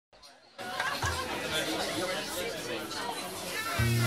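Chatter of people talking in a pub, several voices at once. A short low steady note sounds about a second in, and again more strongly just before the end.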